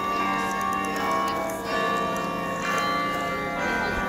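Carillon bells of Bok Tower ringing, a new bell note struck roughly every second while the earlier notes ring on and overlap.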